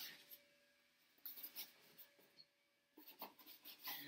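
Faint scrapes and rubs as the lid of an egg incubator is lifted off: a few short, scratchy sounds spread over several seconds.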